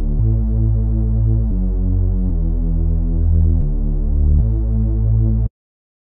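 Deep house bass patch on the Xfer Serum software synthesizer, with a sine sub an octave down: a run of about six long, held bass notes, one after another. It stops suddenly near the end.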